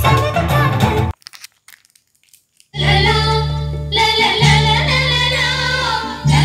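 Songs with singing played through an LG BH7220B 5.1 speaker set and subwoofer driven by a homemade TDA7851L/TDA7379 amplifier. The first song cuts off about a second in, and after nearly two seconds of near silence the next track starts with heavy, steady bass notes under the singing.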